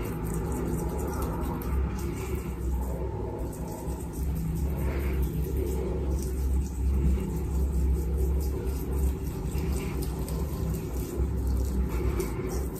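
A steady low rumble with a faint hum above it, swelling and easing a little now and then.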